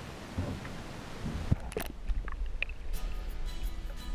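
Wind and water hiss on a small outdoor camera microphone, then a sharp knock about one and a half seconds in, after which the sound turns muffled with a low rumble as the microphone is underwater. Background music fades in about three seconds in.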